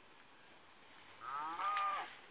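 A cow mooing once, starting just over a second in: a single call that rises in pitch, then holds steady.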